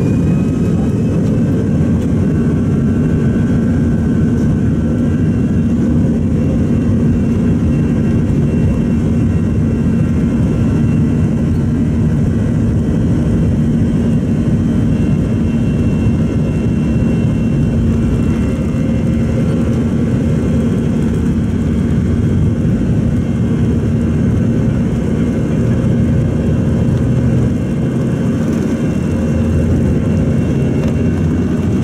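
Airbus A320-214's CFM56 jet engines running at low taxi thrust, heard inside the cabin over the wing: a loud, steady low drone with a faint whine above it that does not change.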